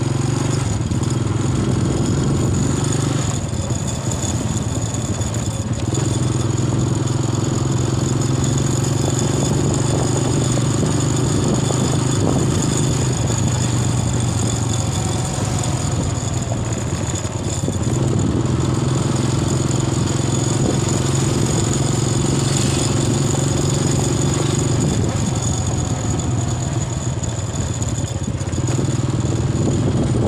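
Engine of a moving road vehicle running with a steady hum that drops back three times: early on, about halfway through and near the end.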